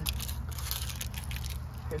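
Fire crackling with irregular small snaps as candy burns in a fireplace, over a steady low rumble.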